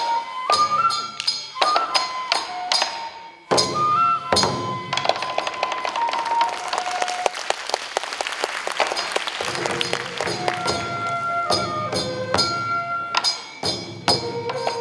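Accompaniment for a Japanese taue odori folk dance: a flute playing a stepping melody over repeated drum strokes. From about five to ten seconds in, audience applause rises over the music and then dies away.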